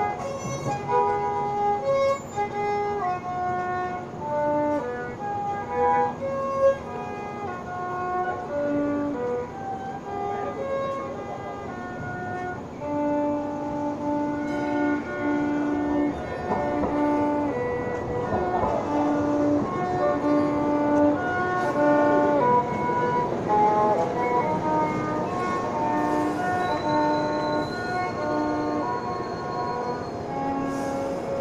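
Violin playing a slow melody of sustained notes, with lower notes sounding beneath it.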